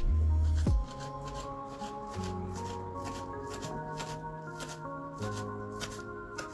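Kitchen knife chopping fresh leafy herbs on a wooden cutting board, with quick, evenly repeated chops about two or three a second. Background music with long held notes plays throughout; it is loud for the first second, then drops and stays quieter.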